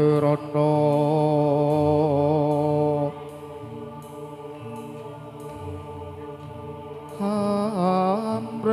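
Javanese gamelan music with a long, drawn-out sung vocal line of held, wavering notes. The singing drops away about three seconds in, leaving softer accompaniment, and returns loud about a second before the end.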